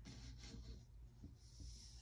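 Near silence: room tone with a faint steady low hum and a few faint rustles.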